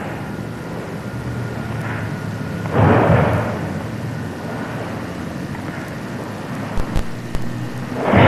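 Steady hiss and low rumble of old camcorder audio, with the movement of a karate kata on a wooden floor: a surge of rustling noise about three seconds in and a few sharp snaps near the end.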